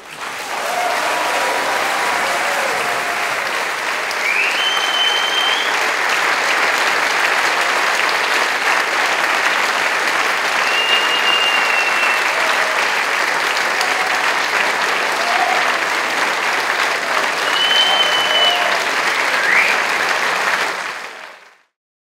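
Audience applauding steadily, with a few high whistles and some cheering voices among the clapping. The applause fades out near the end.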